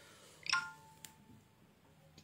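A short two-tone electronic beep from a phone about half a second in, followed by a faint click.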